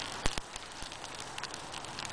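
Small campfire of sticks and dry leaves crackling over a steady hiss, with two sharp snaps in quick succession and a fainter one after.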